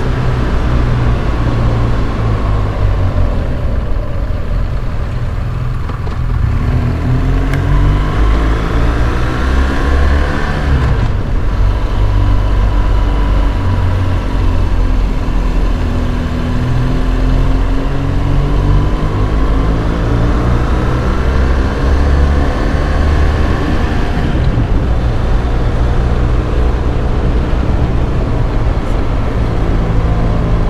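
Motorcycle engine running at road speed under heavy wind rumble, its pitch rising and falling with the throttle through the bends, with a brief drop about a third of the way in.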